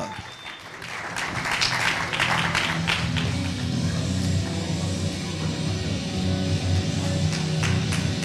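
Audience applause over background music with guitar; the applause fades out after about three seconds while the music's steady bass carries on.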